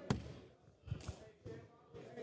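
Faint knocks: one sharp knock just after the start, then two softer, duller thumps about a second and a second and a half later.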